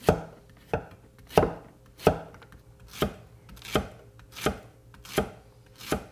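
Large chef's knife slicing Golden Delight yellow zucchini into rounds on an end-grain wooden cutting board. Each cut ends in a sharp knock of the blade on the wood, in an even rhythm of about three strokes every two seconds, some nine in all.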